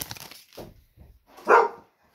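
A pet dog barks once, loudly, about a second and a half in, after a brief crinkle of a foil card-pack wrapper at the start.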